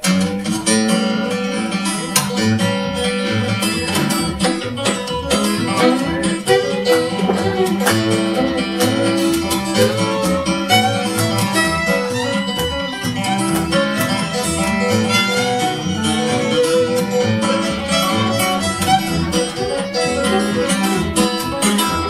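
Live acoustic string band playing the instrumental intro of a country-blues tune: acoustic guitar, fiddle and upright bass, starting all at once at the top.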